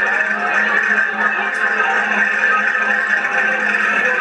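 Accordion playing a vira folk dance tune as steady, unbroken held chords.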